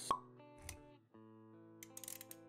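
A sharp pop sound effect just after the start, over background music with sustained plucked notes. A low thump comes a little past half a second, the music drops out briefly about a second in, then resumes with light clicks.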